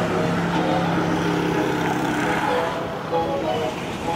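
Road traffic: vehicle engines and tyre noise going by, with a steady low engine hum that stops about one and a half seconds in, under background music.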